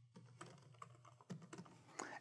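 Faint computer keyboard typing: a quick, irregular run of key clicks as an email address is typed.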